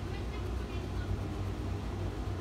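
A coin scratching the coating off a scratch-off lottery ticket, over a steady low rumble.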